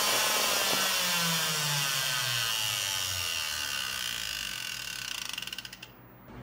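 Craftsman router on a homemade CNC machine, cutting wood as its motor pitch falls steadily while it slows down. It stutters in rapid pulses and fades out near the end: the router is failing, a fault the owner believes came from the speed controller it was run through.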